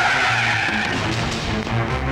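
Car tyres squealing as a car skids to a stop, the screech lasting about a second, over background film music.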